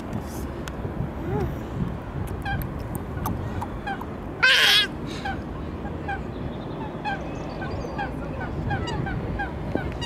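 A flock of waterfowl calling over and over, short falling calls about twice a second. About halfway through there is one loud, high-pitched cry, much louder than the calls.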